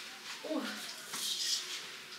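A woman's short exclamation "oh", followed by a brief, faint high hiss or rustle.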